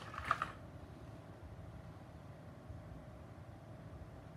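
Quiet workbench room tone: a faint steady hum, with a brief click sound right near the start.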